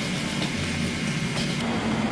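Steady hiss with a low, even hum and no distinct event: the background noise of an old home-video tape recording.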